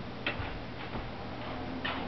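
A few faint, unevenly spaced clicks over a steady low hum.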